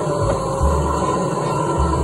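Arcade ambience: electronic game-machine music and sounds from several cabinets at once, with a steady deep bass pulse about once a second.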